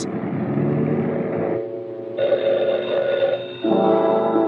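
Old-fashioned desk telephone bell ringing, starting about halfway through, over the film's background music score.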